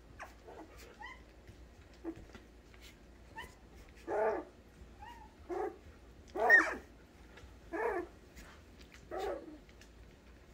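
Young poodle puppies giving short, high cries and squeaks, a few small ones early and then five louder yips about a second apart, the loudest about six and a half seconds in.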